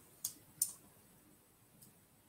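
Clicking at a computer desk: two sharp clicks about a third of a second apart, then a faint third near the end, over quiet room tone.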